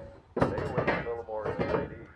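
A person's voice talking continuously, the words not made out.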